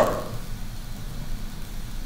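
Room tone: a steady low hum with faint hiss. A man's voice trails off at the very start.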